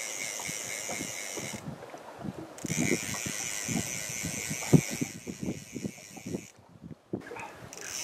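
Fly reel's click-and-pawl drag screaming as a big salmon runs and takes line, cutting out briefly about two seconds in and again from about six seconds until near the end. Scattered knocks of the rod and reel being handled, with one sharp knock near the middle.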